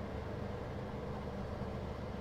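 Quiet, steady low hum with a faint hiss: the room's background tone, with no distinct event.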